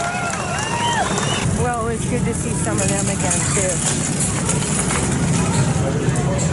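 Motorcycle engines running at low speed, with people's voices over them.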